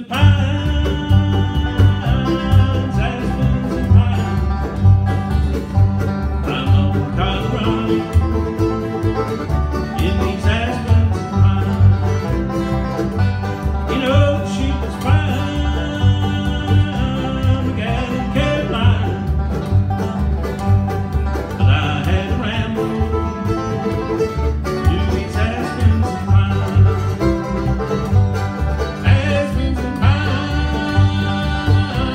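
Live bluegrass band playing a driving up-tempo tune: banjo rolls over acoustic guitar and mandolin, with an upright bass plucking a steady beat underneath.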